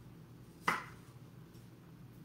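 A single knife chop through onion onto a wooden cutting board: one sharp knock a little after the start, over a faint steady low hum.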